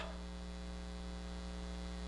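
Steady electrical mains hum: a low, even buzz with a stack of evenly spaced overtones, unchanging throughout.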